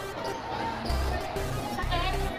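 A volleyball thudding as it is played during a rally, over background music with a steady bass and voices from the crowd.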